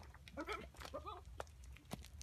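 Goats bleating faintly: two short bleats about half a second apart in the first half, followed by a few sharp clicks.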